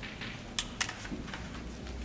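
A string of short, light clicks and taps from a pen or chalk sketching a diagram, two of them sharper about half a second in.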